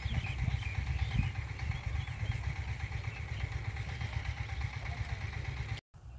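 Wind noise on the microphone, a steady low rumble with faint high chirps above it, cutting off suddenly near the end.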